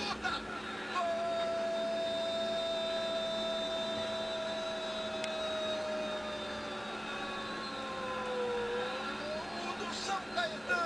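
A Brazilian TV football commentator's long drawn-out goal shout, one held note of about eight seconds. It sags slowly in pitch and then lifts as it ends. It marks a goal just scored.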